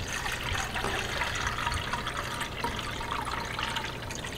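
Water pouring steadily from a glass pitcher into a humidifier's plastic water tank.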